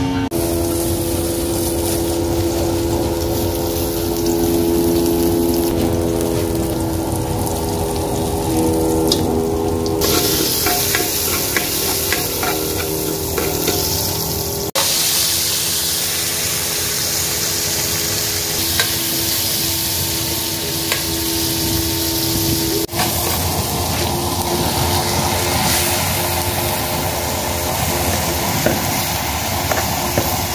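Food sizzling as it sautés in a cast-iron pot, over a steady droning hum. The sound changes abruptly a few times.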